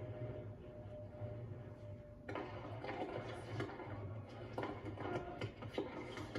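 Faint background sound of a televised tennis match playing through a TV speaker, with a steady low hum. From about two seconds in, a run of light, sharp clicks and knocks sounds.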